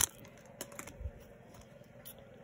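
Baseball trading cards being handled and slid against each other: a sharp click at the start, then a few faint ticks and a soft knock.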